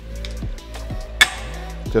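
Background music, with a single sharp metallic click a little past the middle as the rotating handle of a Panatta plate-loaded dip press machine is turned and catches in position.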